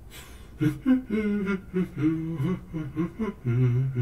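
A man humming a wordless tune in short held notes that step up and down in pitch, after a brief breathy sound at the start.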